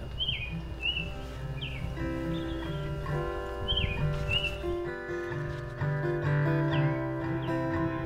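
Small birds chirping in the first couple of seconds, then a guitar comes in playing held chords, with occasional chirps still heard over it.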